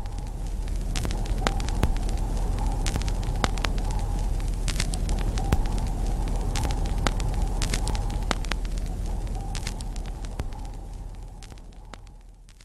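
Campfire crackling with irregular sharp pops over a low steady rumble, fading in and then fading out near the end.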